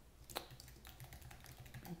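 Typing on a computer keyboard: a quick, uneven run of faint key clicks starting about a third of a second in.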